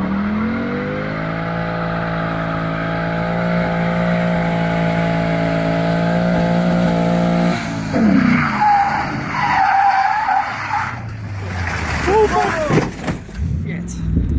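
A Ford Mustang's engine holds a steady note as the car comes down the road. About halfway through, the pitch drops and the tyres squeal for about three seconds during a smoky burnout. After a cut near the end, voices are heard.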